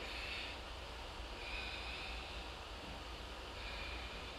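A woman's slow, audible breaths while she holds a forearm plank, three soft breath sounds spaced through the few seconds, over a steady low hum.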